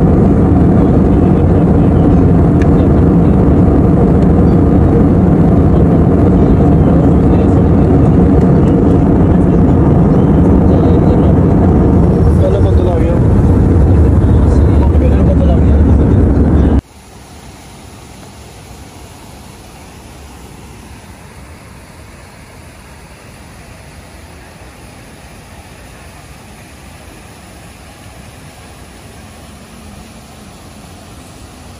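Steady loud cabin noise of a jet airliner in flight. About seventeen seconds in it cuts off suddenly, giving way to a much quieter steady hiss.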